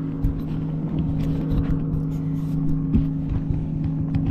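An engine idling: a steady, even hum, with a few light knocks over it.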